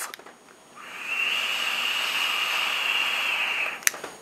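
Steady airy hiss of a long draw through a GG Amadeus Transformer RBA rebuildable atomizer in dripper mode on a vape mod, lasting about three seconds. A short click follows just before the end.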